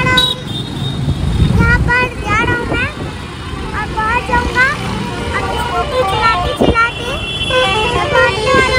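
Street traffic: vehicle engines rumbling with horns honking, mixed with people's voices in the background.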